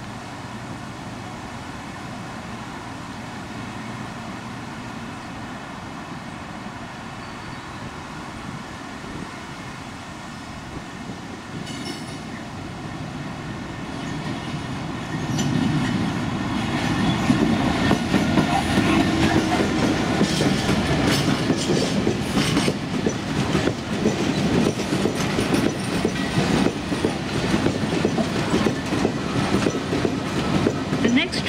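Class 66 diesel-electric locomotive with a two-stroke V12 engine approaching and passing, growing from a steady distant hum to a loud engine rumble about 15 seconds in. Then its engineering train of box wagons rolls past with a rapid, continuous clickety-clack of wheels over the rail joints.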